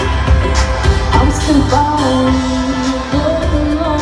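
Live pop music played by a band through a stadium PA, with a female lead singer holding long, gliding notes over steady bass and drums.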